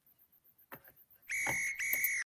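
A referee's whistle sting: two steady high-pitched blasts in quick succession in the second half, the first about half a second long, preceded by a faint click.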